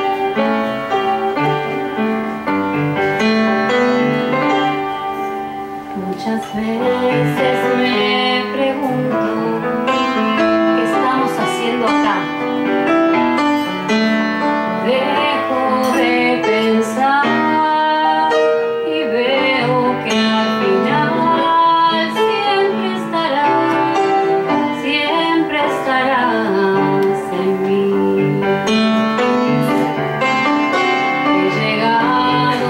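Live grand piano playing a ballad accompaniment, joined by a woman's singing voice from about a quarter of the way in.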